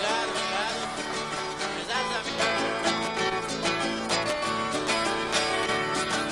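Two viola caipiras, Brazilian ten-string folk guitars, playing the plucked instrumental introduction of a moda de viola, with quick, steady picked notes.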